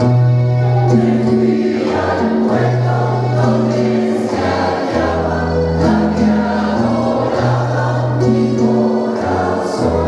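Mixed choir of men's and women's voices singing a habanera, sustained notes changing about once a second.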